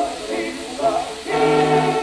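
Shellac 78 rpm record of a military brass band accompanying singing, a Croatian song. The voices move, then about halfway through the voices and band swell into a louder, held chord, over faint record-surface hiss.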